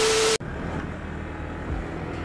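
A short burst of TV static with a steady beep tone, which cuts off sharply about half a second in. It is followed by the low, steady running of a Yamaha R15 V3's single-cylinder engine, with some wind, as picked up by a helmet-mounted camera.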